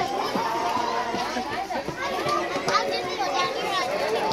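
Several people, adults and young children, talking over one another in a busy, steady chatter.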